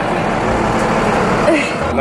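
Street traffic noise heard from above, a steady hiss and rumble, with a brief voice-like sound about one and a half seconds in.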